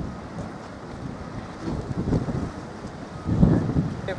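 Wind buffeting the microphone in gusts, a low rumbling noise that swells about two seconds in and is loudest near the end.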